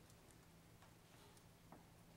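Near silence: hall room tone with a steady faint low hum and a few faint scattered clicks.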